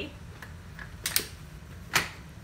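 Sharp plastic clicks of stroller seats and frame latches being handled as the seats are repositioned on the frames. A quick pair comes a little past a second in, and a louder single click comes near the end.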